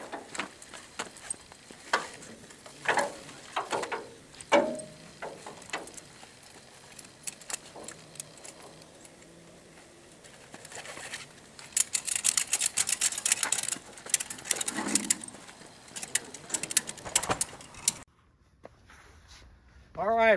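Ratchet tie-down straps being worked to secure a load on a trailer: scattered clanks and rattles of the strap hardware, then a run of rapid ratchet clicking for several seconds past the middle.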